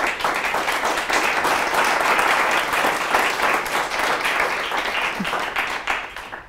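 Small audience applauding, steady clapping that eases slightly near the end.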